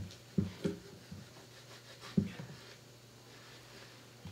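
A few faint, brief scrapes and creaks as a thin blade is worked under an acoustic guitar's fingerboard extension through glue that heat has softened. Two come close together near the start and one about two seconds in.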